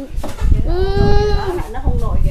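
A high-pitched voice holds one long, drawn-out note for about a second, over a low rumble.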